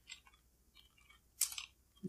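A few faint computer keyboard keystrokes as a word is typed, with one sharper click about one and a half seconds in.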